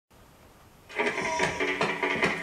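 Quiet for about a second, then a guitar starts strumming a steady rhythm: the opening bars of a song.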